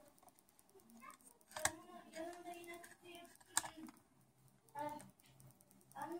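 Faint clicks and taps of a laptop motherboard and its plastic and metal parts being handled and pressed into the chassis, with two sharper clicks about one and a half and three and a half seconds in.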